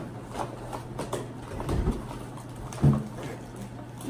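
Crinkling and rustling of the plastic packaging of an MRE's pouches being handled and pulled open, an irregular run of small crackles. Two dull bumps are heard, the louder one near three seconds in.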